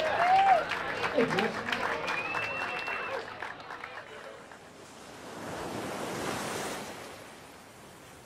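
Audience clapping and cheering, with a whoop and a short whistle, fading over the first few seconds. Then a swell of ocean surf rises and falls away, loudest about six seconds in.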